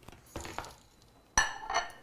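Ceramic kitchenware being handled on a stone counter: a short scrape, then one sharp, ringing clink about halfway through as a bowl or plate is set down.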